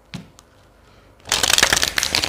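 A deck of tarot cards being riffle-shuffled: two light taps as the halves are set, then a fast fluttering rattle of cards riffling together from about a second and a half in.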